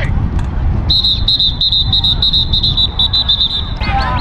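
A high-pitched tone beeping in quick, even pulses from about a second in until near the end, over a low rumble of wind on the microphone.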